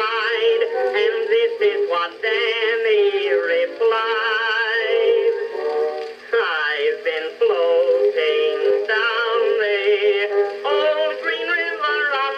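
Edison Blue Amberol cylinder playing on an Edison cylinder phonograph: an acoustic-era recording of a popular song with orchestra and male vocal. The sound is thin and narrow, with no deep bass and no high treble.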